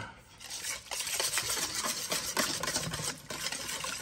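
Wire whisk stirring thick cranberry sauce and chili sauce in a stainless steel bowl, a quick, continuous run of wet stirring strokes with the whisk working against the metal, starting about half a second in.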